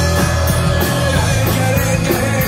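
Live rock band playing loud: electric bass and drums, with cymbals struck in a steady rhythm.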